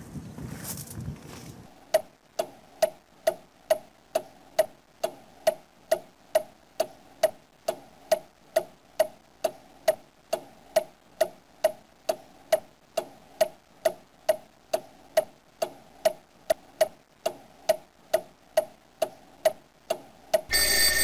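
Clock ticking sound effect, an even tick-tock of a little over two ticks a second, starting about two seconds in.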